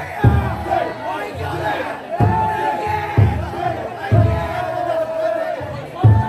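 A big taiko drum inside a festival taikodai float beaten in steady strokes about once a second, under a crowd of carriers shouting and chanting with long held calls.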